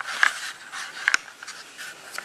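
A few light knocks and clicks of glass candle jars with metal lids being handled on a wooden table, with rustling handling noise between them.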